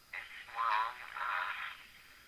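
Speech only: a voice leaving a voicemail message, sounding thin and narrow as over a telephone line.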